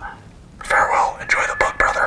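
A man whispering through a small handheld megaphone, in breathy bursts that begin about half a second in, with no voiced pitch.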